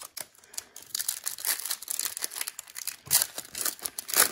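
Shiny plastic wrapper of a hockey card pack crinkling and tearing as it is ripped open by hand, a dense crackle that is loudest about three seconds in.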